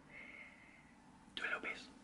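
A faint whisper in a quiet room: a couple of short, breathy whispered sounds a little before the end.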